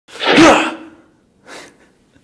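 A man's loud sneeze in the first second, followed a moment later by a short, quieter puff of breath.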